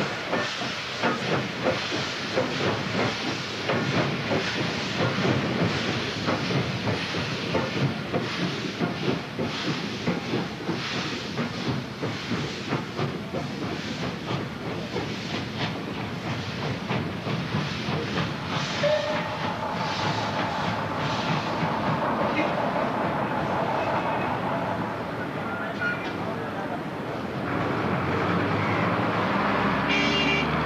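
Steam-hauled train passing close by, its wheels clattering over the rail joints in a fast, steady rhythm with a hiss of steam. The clatter thins out after about eighteen seconds, and near the end the running of a bus engine takes over.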